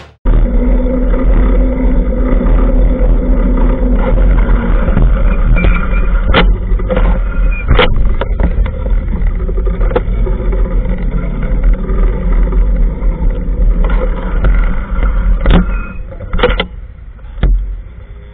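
Street traffic heard from a bicycle-mounted camera: a large touring motorcycle's engine running just ahead, over a heavy, steady low rumble on the microphone. A few sharp knocks come through about a third of the way in and again near the end.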